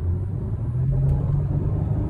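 Ford Mustang's engine and road rumble heard inside the cabin while driving. The engine's low drone steps up in pitch less than a second in and then holds steady.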